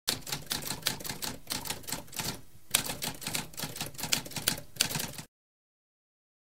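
Typewriter keys clacking in a rapid run of keystrokes, with a brief pause about halfway. The typing stops about a second before the end.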